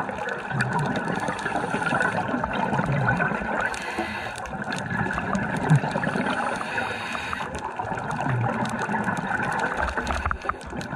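Underwater gurgling of a scuba diver's regulator: breathing with exhaled bubbles rising past the camera, in irregular swells over a steady hiss.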